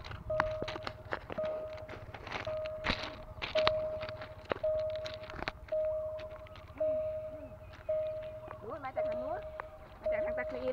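Railway level crossing warning alarm sounding a single steady tone about once a second, each note held most of the second, while the crossing stays closed after a train has passed. Scattered knocks sound over it.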